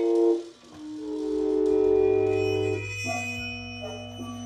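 Live free-improvised jazz from a small ensemble: long held pitched tones over a steady low drone, with a brief drop in level about half a second in and a lower held note taking over near the end.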